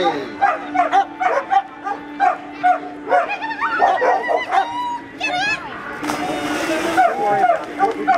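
A dog barking excitedly in a string of short high yips and whines. About six seconds in there is a second-long rush of noise.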